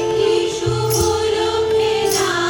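A women's choir singing a song together, with long held notes and a harmonium sustaining underneath, and a hand drum playing low strokes.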